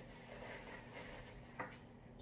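Quiet kitchen room tone with a faint steady hum and one short light click about one and a half seconds in.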